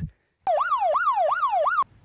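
Police siren in a fast yelp, its pitch sweeping up and down about three times a second. It starts abruptly about half a second in and cuts off suddenly after about a second and a half.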